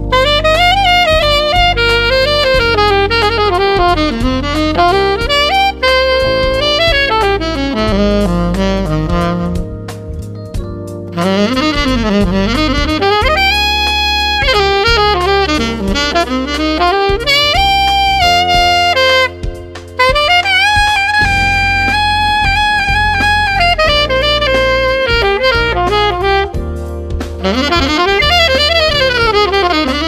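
Selmer Reference 54 alto saxophone playing an R&B melody over a backing track with a bass line: quick up-and-down runs mixed with long held notes, with two short breaths, about ten seconds in and just before twenty. The tone is bright and open, and the player finds its upper notes drift flat.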